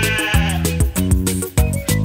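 A sheep bleating once, a wavering baa lasting about a second, over bouncy children's song music with a steady beat.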